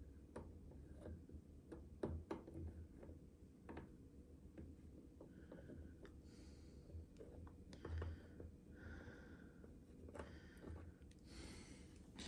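Near silence: faint scattered small clicks and light rustling from handling a plastic tail light housing and a liquid electrical tape applicator.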